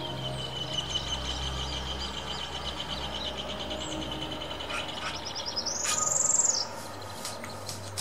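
A bird calling: a long, even, high trill held at one pitch for about five seconds, then a louder, higher buzzy note about six seconds in.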